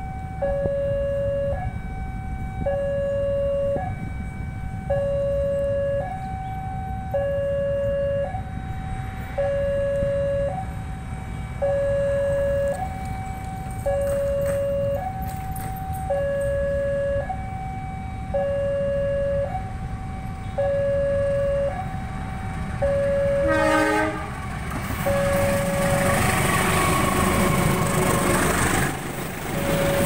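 Level crossing warning alarm sounding a repeating two-tone signal, a lower and a higher tone alternating about once every two seconds. About 24 s in a locomotive horn sounds briefly, then the ballast train's wagons roll past with a rising rumble and rail noise under the continuing alarm.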